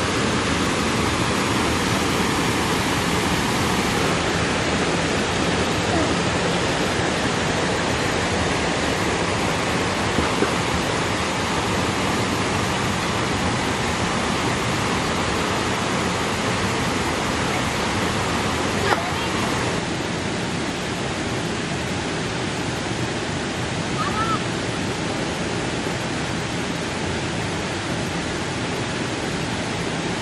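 Steady rushing of a shallow stream flowing over rocks. A single sharp click about two-thirds of the way through, after which the rushing is a little quieter.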